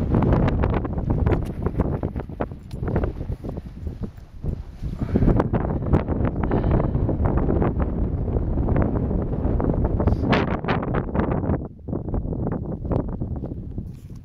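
Strong wind buffeting the microphone in gusts: a loud, low, noisy blast that eases briefly twice.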